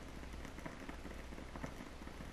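Faint room tone: a steady hiss with a low hum under it and a few faint ticks.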